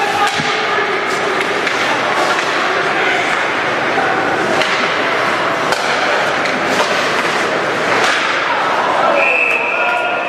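Ice hockey play in an indoor rink: a steady haze of skate and crowd noise broken by frequent sharp cracks and thuds of sticks and puck against the ice and boards. About nine seconds in, a steady high whistle sounds as play stops.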